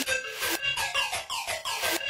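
Hard techno in a breakdown with the kick drum dropped out: a high synth figure of quick falling sweeps repeating about four times a second over a held high tone.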